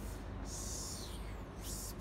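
Steady low hum of an underground parking garage, with a brief breathy hiss about half a second in.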